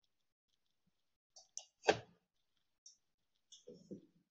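A few short clicks over an otherwise quiet room, the loudest and sharpest about two seconds in.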